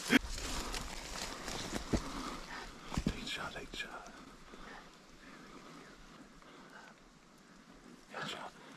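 Hushed woods while a rifle is held on a bird: a short laugh, a couple of soft knocks about two and three seconds in, faint whispering, then a low quiet background for the last few seconds.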